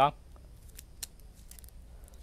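Faint scattered clicks and light handling noise from hands working at the base of a potted tree, the sharpest click about a second in.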